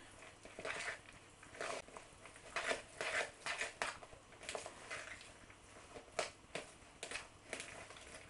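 A hand squishing and mixing a moist cooked-rice stuffing bound with egg yolk and bolognese sauce in a glass bowl: irregular soft squelches and rustles, several a second.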